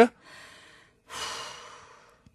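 A person sighing: a short faint breath, then a longer breathy exhale of under a second.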